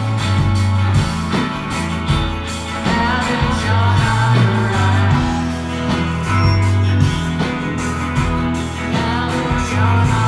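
A psychedelic rock band playing: drums, guitars and a bass line moving between long low notes, with some singing.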